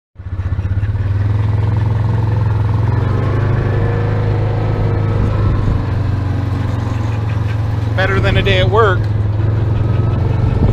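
Side-by-side utility vehicle's engine running as it drives along a rough dirt track, a steady low drone. About eight seconds in, a brief wavering vocal sound rises and falls over it.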